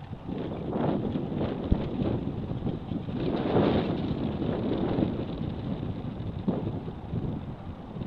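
Wind buffeting the microphone of a handheld camera outdoors: a noisy, uneven low rumble that swells about three to five seconds in.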